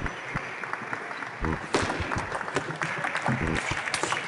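Celluloid table tennis ball clicking off rackets and the table during a rally: a string of sharp, irregular ticks, a sharper crack about halfway through. Steady crowd noise with shouting voices runs underneath.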